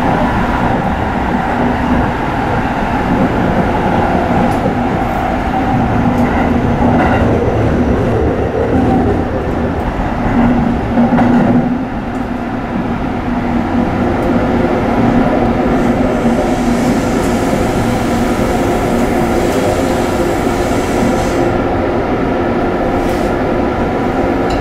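Tsukuba Express electric commuter train running along the line, heard from inside the cab: a steady rumble of wheels on rail with a steady hum over it. It swells briefly about ten seconds in, then drops back.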